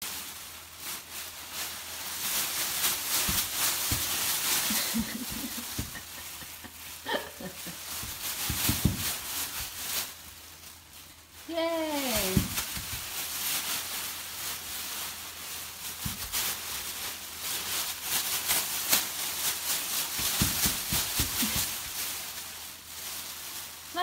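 Thin plastic grocery bags crinkling and rustling as a baby grabs and shakes them, easing off briefly just before the middle. A baby's short squeal falls in pitch about twelve seconds in.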